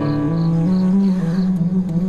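Background drama score of sustained low, held notes, the melody stepping up in pitch about half a second in.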